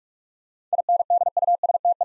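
Morse code sidetone, a single steady beep keyed on and off at 45 words per minute, starting about three-quarters of a second in: the repeat of the word "industry" in Morse.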